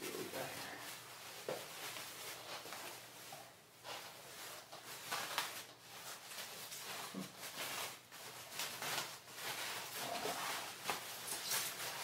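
A thin protective guitar cover rustling and crinkling, on and off, as an electric guitar is slid out of it and the cover is put down.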